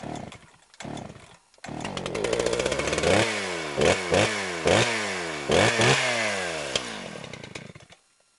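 A small gasoline engine pull-started: two short cranking bursts, catching on the next pull, about a second and a half in. It is then revved quickly about five times, each rev falling back, and stops near the end.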